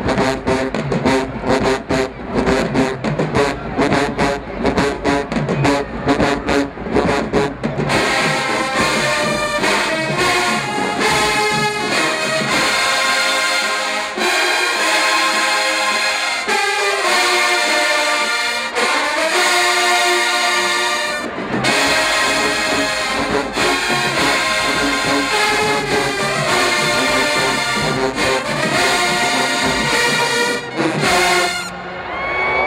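Large marching band brass playing in the stands. For the first eight seconds or so a low, rhythmic line from the sousaphones and low brass leads. Then the full brass section comes in with loud, held chords.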